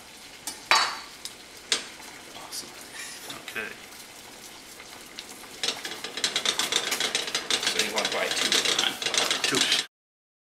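A wire whisk beating a liquid dressing in a small bowl: a fast, scratchy rattle that starts a little past halfway and stops suddenly near the end. Before it there are a couple of light clicks.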